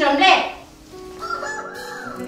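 A rooster crowing once at the start. Soft background music with held notes comes in about a second later.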